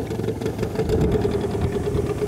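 A small boat's outboard motor running at a steady speed as the boat gets under way, heard from on board.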